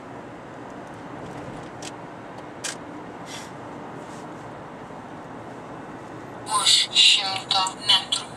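Steady road and engine noise heard inside a moving car's cabin, with a few faint ticks. About six and a half seconds in, a loud voice breaks in over it.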